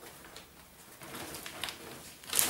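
Soft rustling of a plastic box liner and a leather hide as the hide is lowered into a lined cardboard box and smoothed down by gloved hands, in short scattered bursts.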